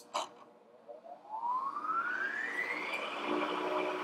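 A two-speed vertical milling machine's spindle motor is switched on with a click, then whines up in pitch for about two and a half seconds as it comes up to speed, and runs steadily near the end.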